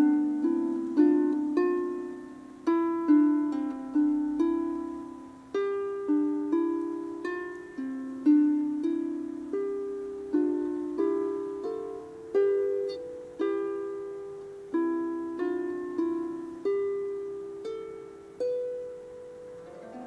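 Small wooden harp played by hand: a slow, unaccompanied melody of single plucked notes, about one or two a second, each ringing and fading into the next.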